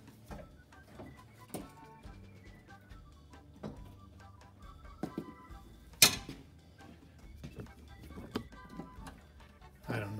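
Quiet background music under scattered clicks and knocks of tools and an old steel brake line being worked loose in a car's floor tunnel, with one sharp knock about six seconds in.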